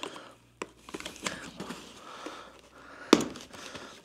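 Foam and plastic packaging being handled and pulled off a bicycle frame, rustling and crinkling, with a sharp click about three seconds in.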